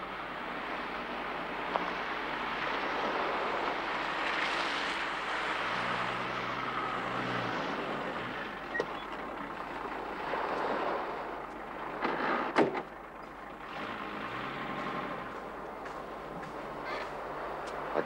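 A 4x4 vehicle driving over sand at night, its engine running with a steady noisy rush that swells as it comes close. About twelve and a half seconds in, a car door shuts with a single sharp thud.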